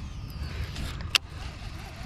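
Cast with a baitcasting reel: a faint whir from the spinning spool falling in pitch, then a single sharp click about a second in as the reel is engaged for the retrieve, over a steady low rumble.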